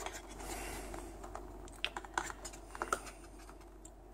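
Light clicks and taps of hands handling a small cardboard box, with a few sharp ticks around the middle.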